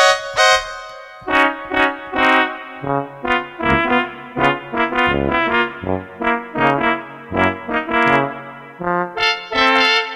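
Casio CZ-101 phase-distortion synthesizer played with both hands: a quick tune of short chords over a moving bass line.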